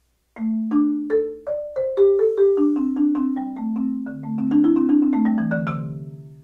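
Marimba struck with four Mike Balter Titanium Series 323R mallets: a short passage of single notes and chords starting about a third of a second in, quickening near the end and finishing on low notes that ring on. The notes have a clear attack that cuts through without being super loud.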